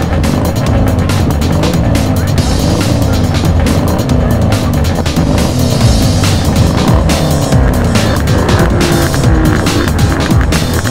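A racing engine revving up and down again and again, over background electronic music.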